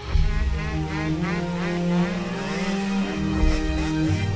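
Motocross bike engine revving hard as it rides, starting abruptly, its pitch climbing and dropping again and again.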